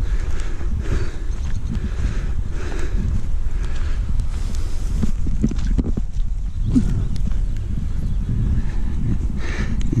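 Footsteps on a park path at a walking pace, about one a second, under a steady low rumble of wind and handling noise on a handheld phone microphone.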